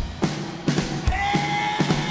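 A live band playing a song's opening: a drum kit beats steadily, about two to three strokes a second, under acoustic and electric guitars and keyboard, and a long held note comes in about a second in.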